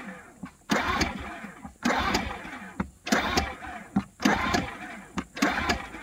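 Recoil pull-starter of an Einhell TC-IG 2000 four-stroke inverter generator pulled five times in a row, a little over a second apart. Each pull whirs the engine over without it firing: it refuses to start, the hard-starting weakness the owners know from this generator.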